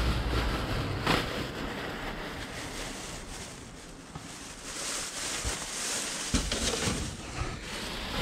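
Plastic trash bags rustling and crinkling as gloved hands dig through them, with a couple of light knocks.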